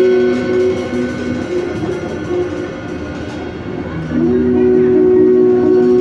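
Free-jazz improvisation by saxophone, trumpet, double bass and drums: two long held notes sounding together, a horn-like drone, break up into a quieter, scratchier passage of shorter sounds, then return loud and steady about four seconds in.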